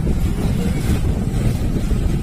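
Motorcycle ride noise in slow city traffic: a steady low rumble of the bike's engine and surrounding traffic, with wind buffeting the phone's microphone.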